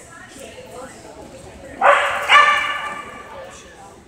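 A dog barks twice about two seconds in, half a second apart. The second bark is the louder and is drawn out, fading over about a second.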